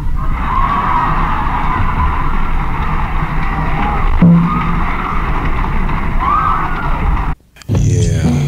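A steady, noisy sound-effect layer with a low rumble underneath, part of a hip hop track's intro. It cuts out to a brief silence shortly before the end, and the music comes back in.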